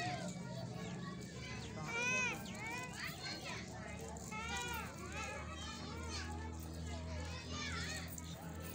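Children's high-pitched voices calling and shouting, loudest about two seconds in, over a low steady hum.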